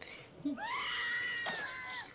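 A woman screaming: one long, high-pitched scream that starts about half a second in, rises, then holds until near the end.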